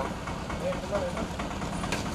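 Low, steady hum of an idling engine, with faint voices in the background.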